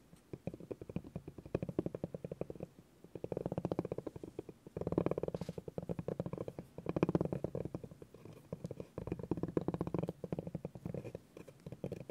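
Spiky rubber massage ball rolled by hand across a wooden board: a fast, dense patter of its spikes tapping the wood. It swells and fades several times as the ball is pushed back and forth.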